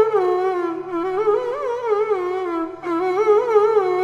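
Carnatic violin playing a slow solo melodic line full of oscillating, sliding ornaments, with no percussion, over a faint steady tanpura drone.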